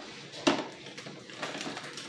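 A bar of Sunlight laundry soap scraped against a flat metal hand grater, with a sharp knock about half a second in, then quieter scratchy grating strokes.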